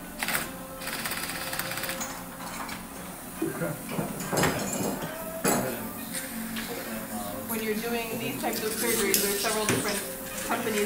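Metal surgical instruments clinking and knocking a few times, sharp and brief, over muffled talk and background music.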